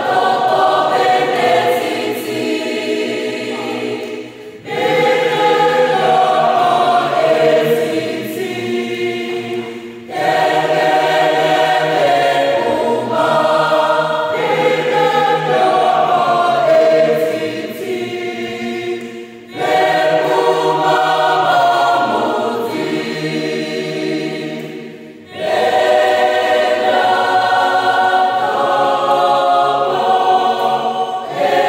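Mixed-voice choir singing a cappella, in long phrases broken by short pauses about four times.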